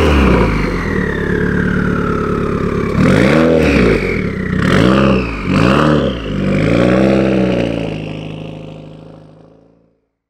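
2015 Subaru WRX's turbocharged flat-four, breathing through a Tomei exhaust and catless downpipe, revving up and down about five times as the car pulls away. It then fades into the distance.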